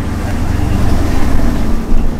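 A loud, steady low-pitched rumble.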